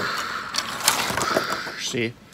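A man making a drawn-out, noisy explosion sound with his mouth as he acts out a toy car crash, with a few light clicks from the plastic toys in his hands.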